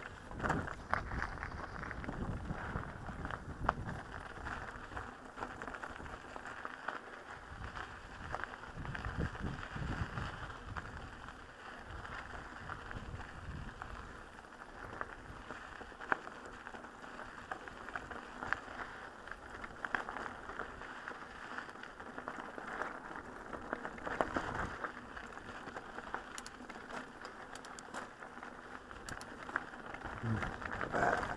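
Mountain bike rolling down rocky singletrack: tyres crunching over gravel and loose rock, with frequent small rattles and knocks of the bike and handlebar camera mount. The sound is muffled, as through a cased action-camera microphone.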